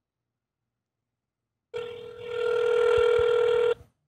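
Telephone ringback tone: one steady ring about two seconds long, starting a little before halfway and cutting off sharply.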